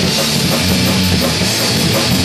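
Live punk rock band playing loud and steady: electric guitar, electric bass and drum kit together.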